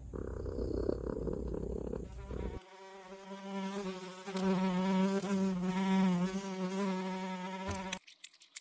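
Sound effect of a fly buzzing: a wavering, pitched hum that starts a little over two seconds in and is loudest in the middle. Before it comes a low rumbling noise.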